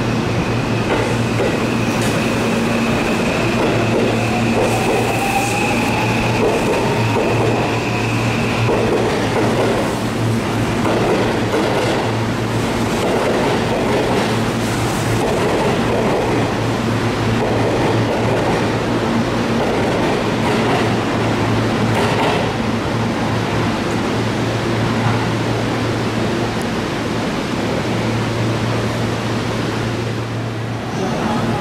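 Seibu 001 series Laview electric limited express pulling out of the platform: the traction motors give a rising whine over the first several seconds as it gathers speed, then the wheels rumble and clack over the rail joints as the cars pass. A steady high tone sounds for roughly the first nine seconds, with a steady low hum underneath throughout.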